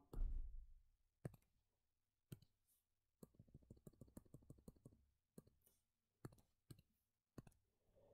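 Faint computer mouse clicks operating an on-screen calculator: single clicks, then a quick run of a dozen or so clicks over about two seconds, then a few more spaced clicks. A soft low thud comes right at the start.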